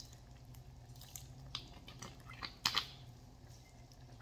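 Quiet handling sounds: a few faint scattered clicks and taps as a plastic bottle of apple cider vinegar is capped and put down after pouring, with a light drip of liquid.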